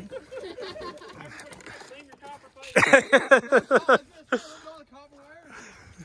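Men's voices in the background, with a loud run of laughter about three seconds in.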